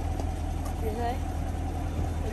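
Chevrolet Camaro SS's V8 idling steadily, a low even hum.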